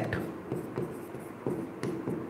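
Stylus writing by hand on an interactive display screen: faint scratching with a few light taps as a word is written.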